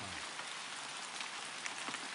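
Steady rain hiss dotted with small droplet ticks. A low voice underneath trails off just after the start.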